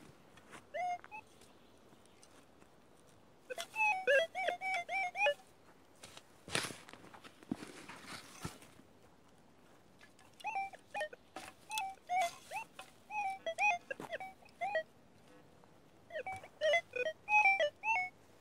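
Berkut 5 metal detector giving bursts of warbling beep tones as its coil is swept over a freshly dug hole, with a couple of soft knocks from the digging between them. The signal is from a target that the detectorist reckons is probably a spent cartridge case.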